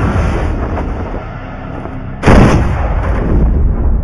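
Crash sound effects from a movie trailer: a dense rumbling crash noise fades away, then a single heavy boom hits suddenly a little past halfway and dies away.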